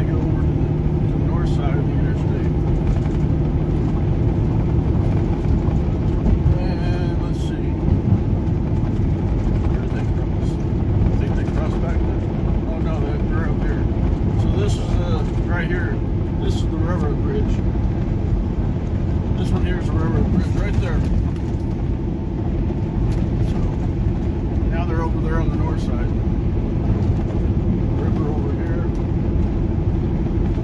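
Cab noise of a semi-truck driving at highway speed: a steady diesel engine drone with road and wind noise.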